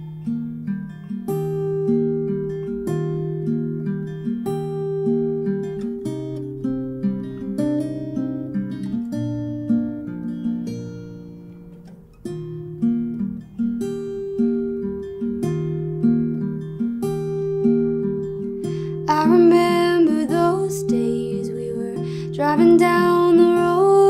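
Solo acoustic guitar playing a song's intro as a repeating pattern of plucked notes. A woman's singing voice comes in near the end.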